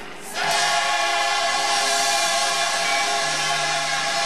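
Large gospel mass choir singing, coming in about half a second in on a loud chord that is held steadily.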